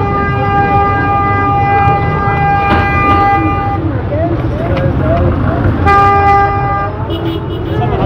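A vehicle horn held steadily for about four seconds, then sounded again for about a second near the six-second mark, over crowd noise.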